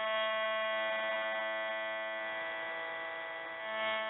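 A steady drone of one held pitch with many overtones, swelling gently near the end, the accompaniment left sounding once the chanting has stopped.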